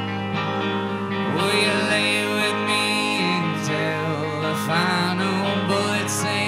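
A live rock band playing, with guitars sounding under a wavering melody line.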